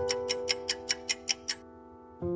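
Quiz countdown-timer sound effect: clock-like ticking, about five ticks a second, over a held background music chord. The ticking stops about one and a half seconds in and the music fades out.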